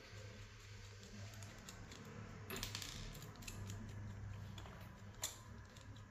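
Faint metallic clicks and scraping of a small screwdriver turning out the tiny set screws of a gold-plated pin-type speaker connector, a little louder through the middle, with a few sharper clicks near the end.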